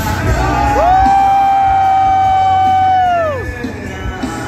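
A singer holds one long, steady sung note through a stadium PA, sliding up into it and falling off at the end, while the band's beat drops out beneath it. A crowd cheers and whoops under the note.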